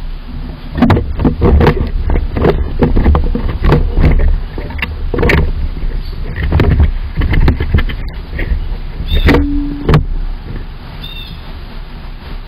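Squirrel scrambling about in a wooden nest box right against the microphone: an irregular run of scratches, knocks and fur rubbing over the mic, with a low rumble, easing off near the end.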